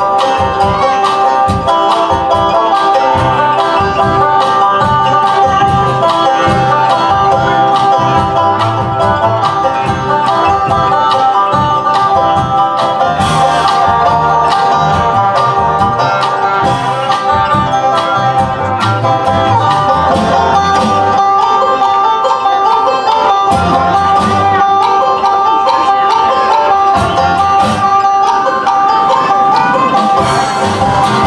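A banjo picking a bluegrass tune, with rapid plucked notes throughout, backed by a plucked upright bass.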